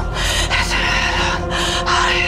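A woman breathing hard in quick, ragged gasps, about four or five a second, over a dark horror score with a low steady drone and held tones.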